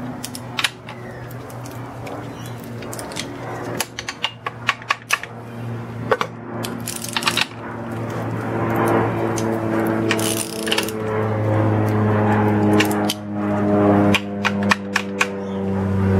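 Socket ratchet clicking in short runs and a steel spanner clinking as the nuts on leaf-spring U-bolts are tightened. A steady hum made of several even tones runs underneath and grows louder from about halfway.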